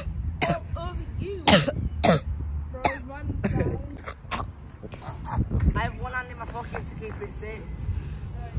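A person clearing their throat with a few short, loud coughing rasps in the first couple of seconds, followed by quieter, indistinct voices.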